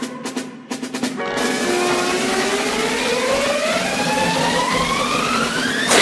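Cartoon soundtrack: a few sharp drum hits in the first second, then a loud rushing sound with a whistle-like tone that glides steadily up in pitch for about four seconds and peaks at the end, as a toy train speeds along its track.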